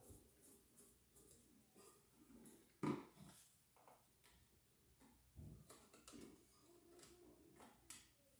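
Near silence broken by faint clicks and taps of a hand tool and stiff old wires being handled at a wall outlet box, the sharpest tap about three seconds in.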